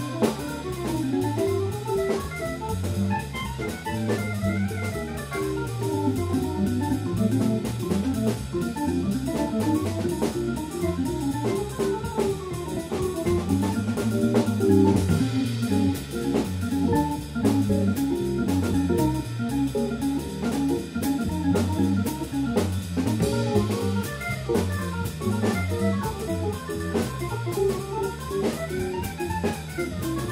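Live jazz combo playing: a hollow-body archtop electric guitar runs rising and falling single-note lines over organ and drums.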